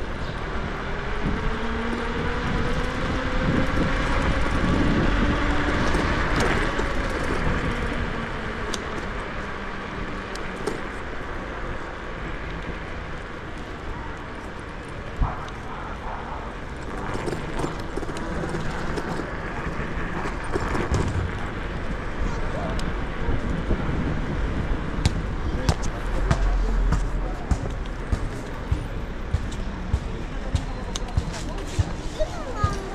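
Riding noise from an Ecoxtrem Bison 800W electric scooter: a steady rumble of wind and tyres on paving, with a motor whine that rises in pitch over the first few seconds. A run of sharp knocks comes near the end.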